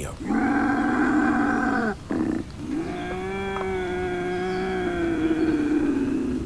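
Eerie, drawn-out cries of unknown origin: one steady cry of about a second and a half, then, after a short pause, a longer and slightly higher cry of about three seconds that wavers and sags near its end.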